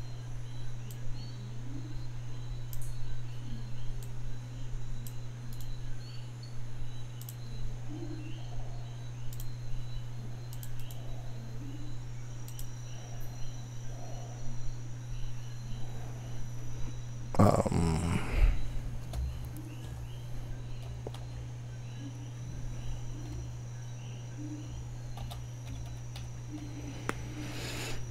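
A steady low electrical hum with faint, scattered keyboard and mouse clicks as a web search is typed in. A brief louder noise breaks in about two-thirds of the way through.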